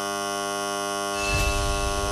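Game-show buzzer: a harsh, steady electronic buzz, joined by a low rumble about a second in. It sounds as the losing signal, marking that the contestant's chosen microphone, number one, is not the debt-clearing one.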